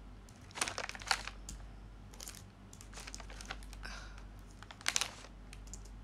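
Handling noise close to the microphone: a scatter of soft taps, rustles and scrapes, like fingers working a phone, with louder rustles about half a second and one second in and again near the five-second mark.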